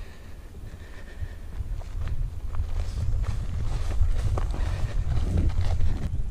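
Footsteps of a person walking along a dry, grassy footpath at a steady pace, about two steps a second, growing louder after the first couple of seconds, over a low wind rumble on the microphone.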